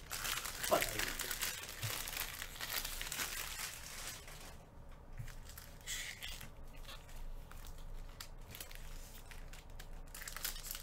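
Trading-card pack wrappers crinkling as Panini Prizm basketball packs are handled and torn open: dense crackling for the first few seconds, then sparser crackles and clicks.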